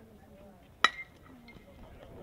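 A metal baseball bat hits a pitched ball about a second in: one sharp ping with a brief ringing tone after it, over faint crowd voices.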